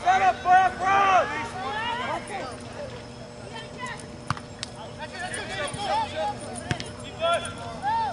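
People shouting and calling out during a soccer match, loud short calls in the first second or so, then quieter scattered calls. A few sharp knocks come about halfway through and again near the end.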